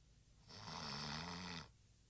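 A sleeping person snoring: one long snore starting about half a second in and lasting just over a second.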